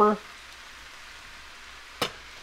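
A skillet of ground beef, cabbage and onion frying on the stove: a faint, steady sizzle.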